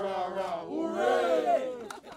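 A small group of people cheering and whooping together, with laughter, dying away near the end as the first claps come in.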